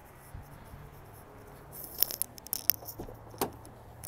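Keys jangling and the driver's door of a 2011 Nissan Frontier pickup being unlatched and swung open, a run of sharp clicks and rattles in the second half.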